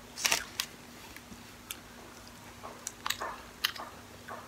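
Close-miked eating of French fries: irregular mouth clicks and short crisp crackles of chewing, loudest about a quarter second in, with another cluster around three seconds.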